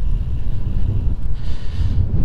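Wind buffeting the microphone of a camera on a moving bicycle: a loud, uneven low rumble.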